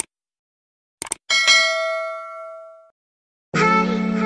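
Sound effect of a subscribe-button animation: a quick double click, then a bell ding that rings and fades over about a second and a half. Guitar music starts near the end.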